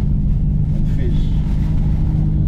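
Inside the cabin, a stage-1-tuned VW Golf 7 GTI's turbocharged four-cylinder engine drones steadily at a constant engine speed, with low road rumble underneath and no exhaust pops.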